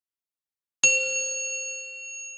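A single bell chime sound effect: one bright ding struck about a second in, its ringing tones slowly fading.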